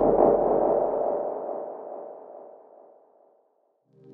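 A single resonant, ringing tone from the soundtrack that starts suddenly just before and fades away slowly over about three seconds into silence.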